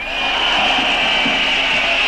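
A steady, loud rushing hiss of noise, with no speech over it.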